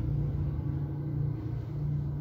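Steady low background rumble with nothing else standing out.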